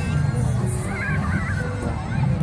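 Fairground music with a steady bass, and wavering screams from riders on a swinging pendulum ride about a second in.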